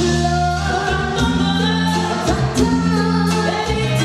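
Live Tejano band music with a woman singing lead into a microphone, over long held notes from the band.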